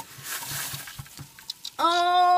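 Rustling and a few light knocks as a phone is handled over a cooking pan, then near the end a man's long, held 'ohh'.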